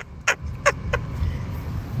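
A woman's breathy laughter, a few short bursts in the first second, over the steady low rumble of a car cabin.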